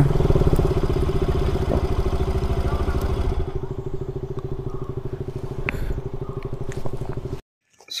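Motorcycle engines idling with a fast, even pulse, the sound of bikes standing with their engines running. It cuts off abruptly near the end.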